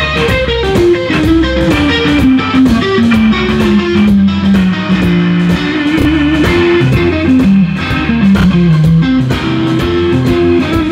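Live blues band playing an instrumental passage: an electric guitar plays a lead line of bent notes that wanders downward, over organ and drums with regular cymbal hits.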